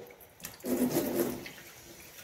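Kitchen tap running into a sink, the water splashing as a knife is rinsed clean of margarine under it, louder for about a second near the middle.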